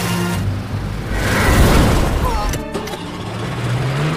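Film soundtrack of an outboard motorboat speeding through water: the engine runs under heavy water spray and wash, mixed with a dramatic music score. Near the end the engine's pitch rises as it revs up.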